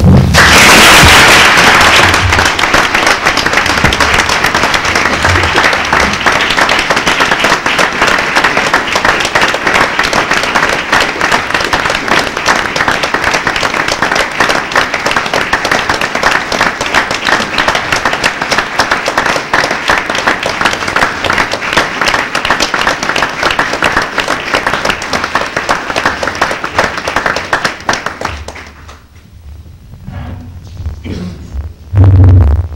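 Audience applauding: a crowd of many hands clapping, loudest in the first two seconds, then steady, dying away near the end.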